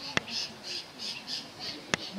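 Harsh bird squawks repeated about three times a second, cut by two sharp clicks, one just after the start and one near the end.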